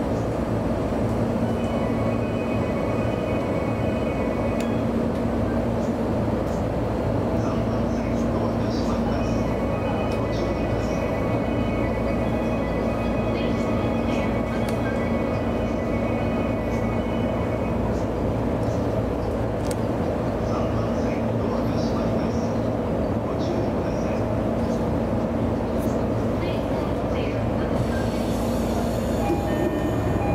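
JR East E233 series electric train standing at a platform, heard from the driver's cab: a steady hum of its onboard equipment, with a faint high whine that comes and goes in stretches.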